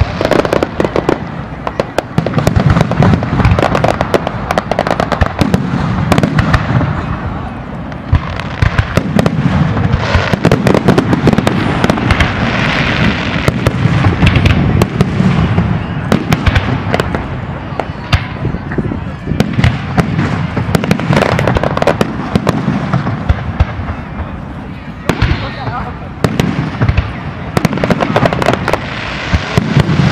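Fireworks display going off in rapid succession: many sharp bangs and crackles over a continuous low rumble, with a few brief lulls, and crowd voices underneath.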